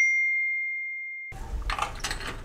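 A single bright ding, a bell-like sound effect struck once that rings on one clear note and fades away over about a second and a half. Faint background noise follows.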